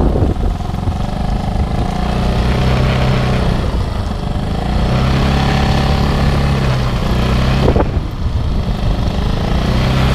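Motor scooter engine running steadily under the rider, with road and wind noise, and a brief knock a little before the end.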